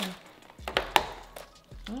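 A takeout container being handled: a few short sharp clicks and knocks, three quick ones just before a second in and one more about half a second later.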